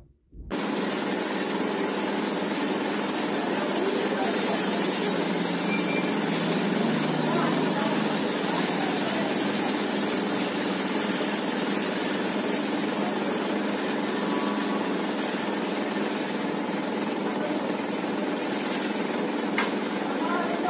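Steady outdoor background noise, an even hiss with no distinct event standing out.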